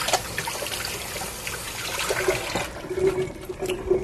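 A steady rushing noise that drops away about two and a half seconds in, leaving a fainter low hum.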